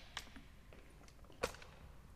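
Light handling clicks from a small clear raffle drum as a ticket is drawn from it: two short sharp clicks, the louder about a second and a half in, with a few faint ticks between.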